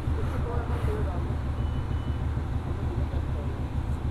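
Steady low rumble of motor vehicles idling and moving around a busy petrol station forecourt, with faint background chatter.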